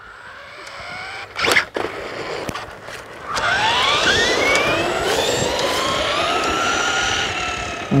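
RC monster truck's motor and gears whining as it runs along asphalt at nearly, but not quite, full throttle: the whine rises steeply in pitch about three seconds in, then holds high and sags slightly near the end, over a hiss from the tyres. A short knock sounds about a second and a half in.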